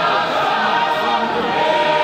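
A large congregation singing together, many voices at once.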